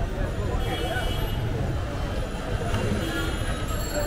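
Busy street-stall ambience: overlapping voices of a crowd over a steady low rumble.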